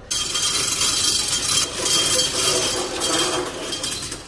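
Metal roller shutter door rattling as it is pulled down to close, a continuous metallic clatter that fades near the end as the shutter comes down.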